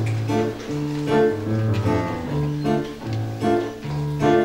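Pit band playing an instrumental passage of the musical's song, plucked chords over a bass line that moves about twice a second, with no singing.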